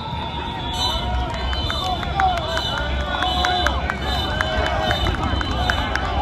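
Overlapping shouts and chatter from a group of football players and coaches moving about together, with scattered sharp clicks and knocks among them. A steady high tone and a low rumble run underneath.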